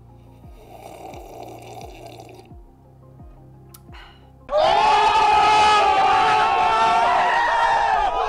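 A slurping sip from a mug over quiet background music with a steady beat, then about halfway through a sudden loud burst of a group of young men shouting and hollering together, which runs on to the end.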